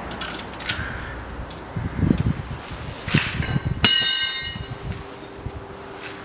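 Hand work on steel suspension parts as a greased bolt is fitted at the front sway bar mount: irregular knocks and rubbing, then one sharp metallic clink about four seconds in that rings briefly.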